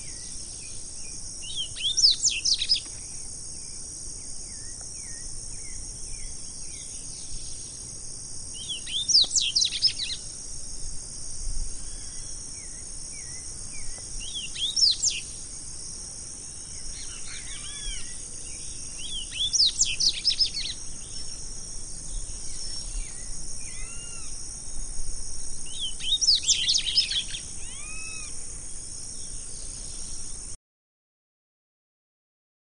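Double-collared seedeater (coleirinho, Sporophila caerulescens) singing, about five short bursts of fast sweeping notes some six seconds apart. A steady high insect hiss runs beneath, with fainter calls of other birds between the phrases.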